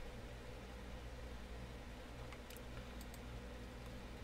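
Faint clicks from working a computer, a handful in the second half, over a low steady hum and room tone.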